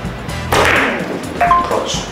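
A carom billiards shot: the cue strikes the ball and the ivory-hard balls click together, starting sharply about half a second in. About a second later comes a short, bright two-tone ping.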